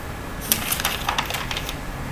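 A quick run of about ten light clicks and taps, starting about half a second in and lasting just over a second.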